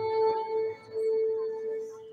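Solo violin holding two long notes at the same pitch, with a brief break between them; the second note fades away near the end.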